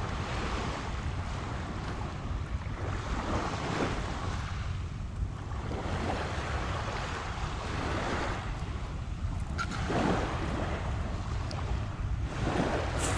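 Small waves washing onto a pebble shore, the wash rising and falling every few seconds, over a steady low rumble of wind on the microphone.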